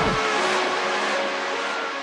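Electronic dance track in a breakdown: the bass cuts out with a quick downward sweep just after the start, leaving stepped synth notes over a whooshing noise sweep.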